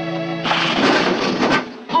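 Film score with bowed strings, cut off about half a second in by a loud crash lasting about a second, with a sharp knock near its end: a slapstick fall of a man against an old wooden door.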